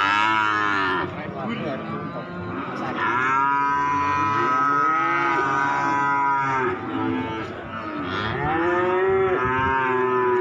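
Cattle mooing: several long, loud calls that overlap, one at the start, a long one from about three seconds in, and another near the end.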